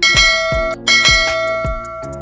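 Bell-like chime sound effect struck twice, the second strike a little under a second in, each one ringing on. Background music with a steady beat plays underneath.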